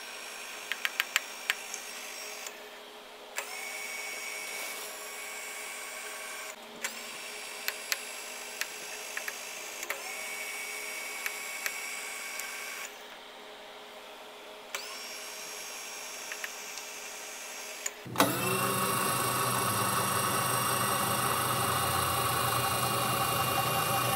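Small electric motor running steadily, the milling machine's table power feed carrying the clamped tailstock under a dial test indicator, with a few light clicks about a second in. The hum gets louder and fuller about 18 seconds in.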